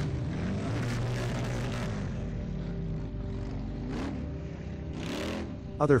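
Engines of a street procession of cars and motorbikes running, with a few revs rising and falling over a steady low hum.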